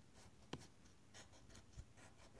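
Faint scratching of a scratch-off lottery ticket's coating being scraped off with a pointed scratching tool, in short strokes, with a sharp tick about half a second in.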